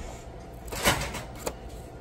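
Light plastic knocks and rattles from net pots and seed trays being handled: a short cluster a little under a second in and a single click about half a second later.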